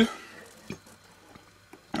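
A quiet pause after the last syllable of a man's word, with two faint short clicks, the second just before he speaks again.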